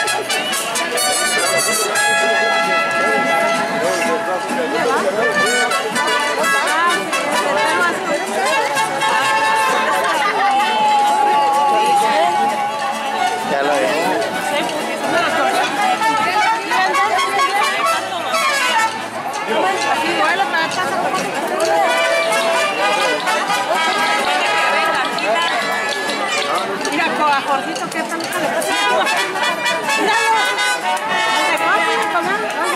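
Crowd chatter with brass band music playing; held brass notes stand out in the first few seconds.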